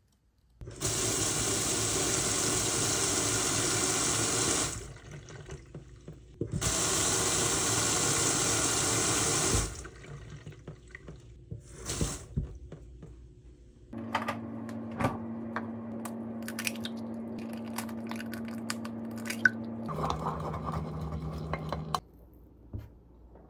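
Kitchen tap running hard into a sink in two long gushes of about three to four seconds each, then a thinner, quieter stream. Later a steady low hum starts, with light clicks and clinks over it.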